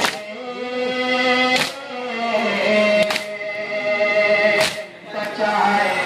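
A man's voice sings a nauha lament into a microphone in long held notes, while a crowd of men beat their chests in unison, a sharp slap about every one and a half seconds.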